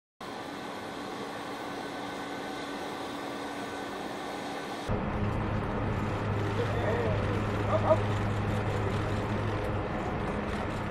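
Steady engine hum carrying several steady whining tones. About five seconds in it changes abruptly to a lower, steady hum, with brief voices and a spoken "okay" near the end.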